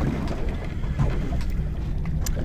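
Boat engine idling with a steady low rumble, with wind on the microphone over it.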